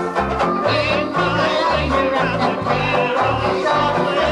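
Several banjo ukuleles strummed together in a lively, steady-rhythm tune.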